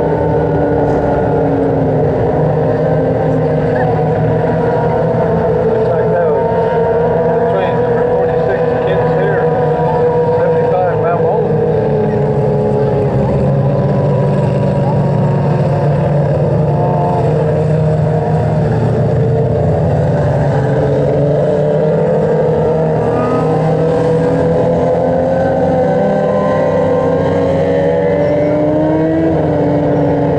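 Several dirt-track race car engines running steadily at low revs, their pitches drifting slowly up and down as the cars idle and circle.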